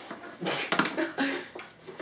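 Clear plastic packaging crinkling and rustling in irregular bursts as a walkie-talkie wrapped in it is turned over in the hands.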